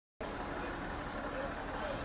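Street ambience: a steady rumble of traffic with indistinct voices of people around.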